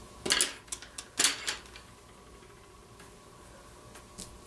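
A few short clicks and scrapes of a drawing pencil being handled in the first second and a half, then faint room tone.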